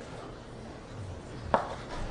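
Chalk writing a short word on a blackboard: soft scratching and tapping strokes, with one sharper stroke about one and a half seconds in.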